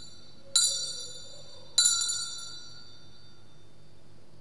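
Altar bells (Sanctus bells) shaken twice, each ring a bright cluster of high chimes dying away, about a second apart. In the Mass this marks the elevation of the chalice just after its consecration.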